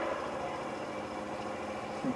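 A steady background hum with faint held tones, no speech.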